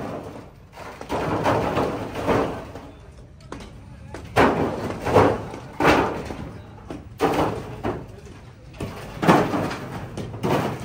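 A series of loud, irregular bangs, roughly one a second, each with a short echo, as from heavy impacts among concrete and brick rubble. Voices mix in.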